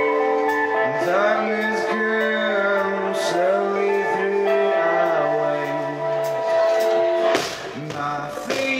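Live indie rock band in an instrumental passage: sustained electric guitar notes with gliding pitches over light cymbal ticks, and a louder crash about seven seconds in.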